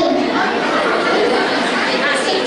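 Many voices chattering at once, a steady murmur of people talking over one another.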